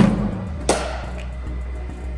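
A cricket bowling machine launches a ball with a sharp knock, and about 0.7 s later a bat strikes the ball with a second crack, over background music.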